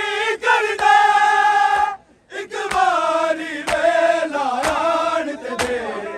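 Men's voices chanting a noha together in long, held notes, breaking off briefly about two seconds in. From about halfway, sharp strikes of matam chest-beating come in unison under the chant, roughly once a second.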